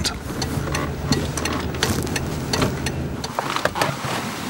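Car engine and road noise heard from inside the cabin while driving: a steady low hum with a few faint clicks. The hum drops away about three seconds in.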